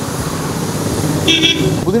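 Street traffic noise with a short vehicle horn toot, a single beep about a second and a half in.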